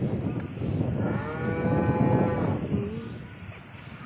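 Cattle mooing: one long, steady moo starting about a second in, followed by a brief second note.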